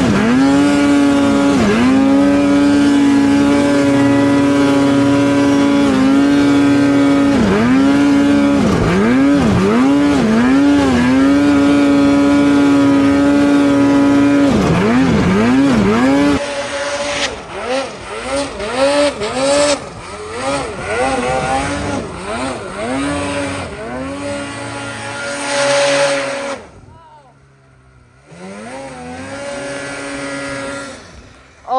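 Two-stroke snowmobile engine on a 2024 Polaris 9R, revved up and down over and over as the rider works the throttle through deep powder, the pitch dipping and climbing every second or two. About halfway through the sound cuts to a quieter, farther-off snowmobile revving in short bursts as it climbs, dropping almost to nothing briefly near the end before the engine comes back.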